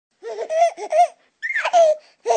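A baby laughing in two short bouts, the second ending in a drawn-out, slightly falling note.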